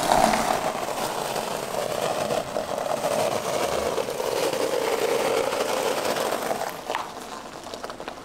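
A BMW coupé creeping slowly across a gravel drive, its tyres crunching over the stones in a steady crackle. The sound fades out about seven seconds in, with one short click.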